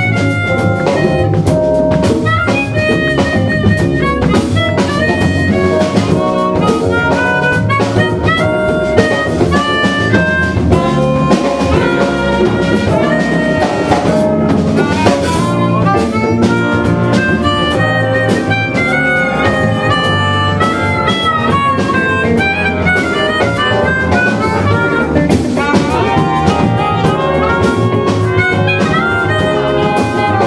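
Live jazz band playing: a harmonica lead played into a microphone, over electric guitar, bass, drum kit and a horn section of trumpet, trombone and saxophones.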